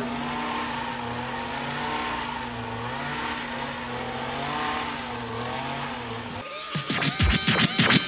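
Powered pole hedge trimmer running steadily while cutting into a shrub, its pitch drifting slightly up and down. About six and a half seconds in, the sound cuts abruptly to electronic music with sharp beats.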